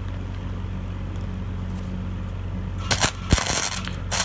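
Steady hum from a Sealey Mighty Mig 100 flux-core welder, then about three seconds in the flux-core wire arc strikes on thin sheet steel and crackles, starting a spot weld.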